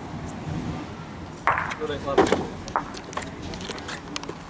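Outdoor ambience with a steady low rumble, broken by brief shouted words about one and a half to two and a half seconds in, and a few sharp clicks later on.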